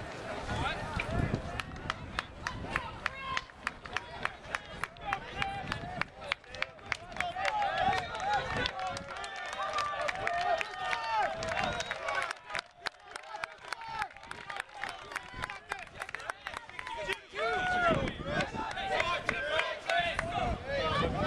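Track-meet spectators talking and calling out, with a long run of sharp, evenly spaced claps close to the microphone, about three a second, easing off past the middle and picking up again near the end.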